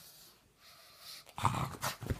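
Pug making a short run of rough, noisy sounds about one and a half seconds in, after a quiet first second.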